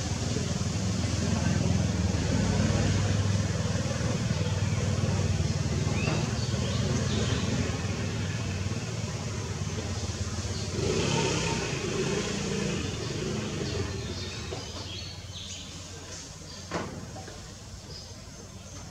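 A motor vehicle's engine rumbling, loudest through the first half and fading away toward the end. A single short knock sounds near the end.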